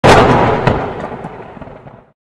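Logo-intro sound effect: a sudden loud explosion-like boom that dies away over about two seconds, with a second, smaller crack under a second in.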